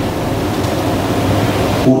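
A steady, even hiss of background noise during a pause in speech, cut off suddenly as a man's voice begins near the end.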